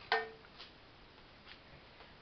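A stainless steel pot knocked once just after the start, ringing briefly with a clear tone, followed by a couple of faint ticks.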